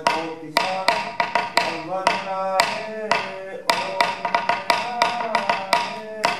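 A group of voices singing an otuhaka chant in unison, holding long notes, over sharp percussive strikes at about three a second.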